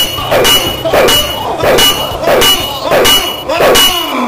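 A run of about seven shrill, screeching stabs, one roughly every 0.6 s. Each has a falling cry under it, timed to a mock overhead stabbing.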